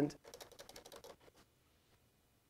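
Typing on a computer keyboard: a quick run of about ten keystrokes in the first second or so.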